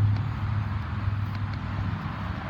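A steady low machine hum with an even hiss over it.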